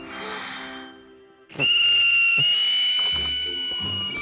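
Small cartoon toy flute blown hard: first a breathy rush of air with no note, then about a second and a half in a shrill, steady high whistle that holds on. The flute is blocked with paint.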